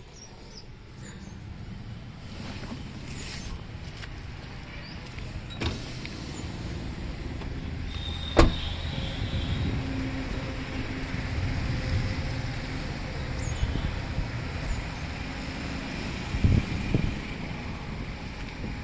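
Rustling, handling noise with a low rumble that grows slowly louder, and one sharp slam about eight and a half seconds in: a car door of the Maruti Swift Dzire being shut.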